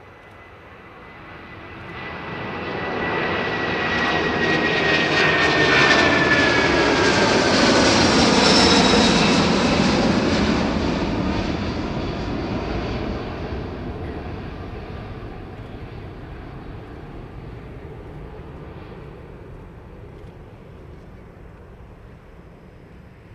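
Boeing 747-400 jet airliner with four Rolls-Royce RB211 turbofans passing low overhead and climbing away. The roar swells to its loudest a few seconds in, with a high whine falling in pitch as it goes by, then fades slowly as the aircraft recedes.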